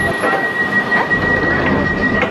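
London Underground train running, heard from inside the carriage: a dense rattling rumble with a steady high-pitched whine over it and a few faint knocks.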